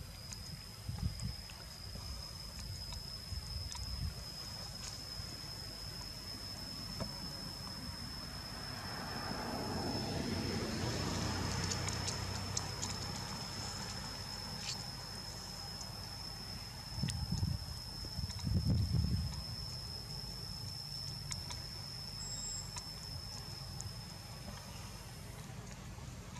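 Outdoor ambience under trees: a steady high-pitched whine, a swell of rushing noise that builds and fades over several seconds in the middle, and a few low thumps near the end.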